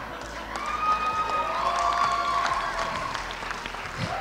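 A room of guests applauding, with laughter and a few voices calling out. The clapping swells about half a second in and dies down near the end.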